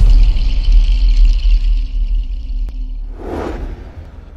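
Logo sting sound design: a deep sustained bass rumble under a shimmering high tone, a short whoosh a little after three seconds, then fading out.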